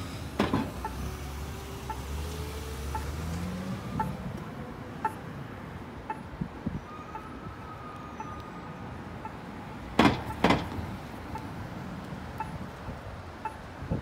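Locator tone of a Novax accessible pedestrian signal pushbutton ticking about once a second during the don't-walk phase, over street traffic, with an engine rising in pitch over the first few seconds. Two sharp clicks half a second apart about ten seconds in are the loudest sounds.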